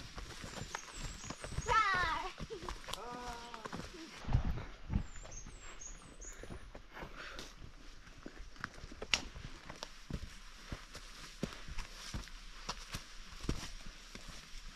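Hikers' footsteps on a dirt and rock forest trail, a steady scatter of soft crunches and knocks. Brief wordless vocal sounds come between about two and four seconds in, and faint high bird chirps sound twice.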